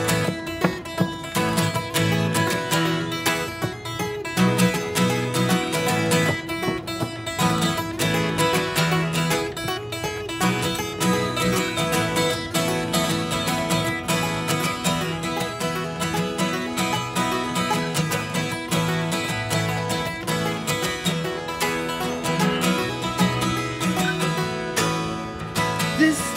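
Two acoustic guitars playing a steady, rhythmic instrumental passage without singing.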